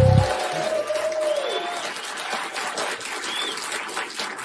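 Studio audience applauding at the opening of a TV comedy news show, over the tail of its theme music: a held note from the music fades out about a second and a half in while the clapping carries on.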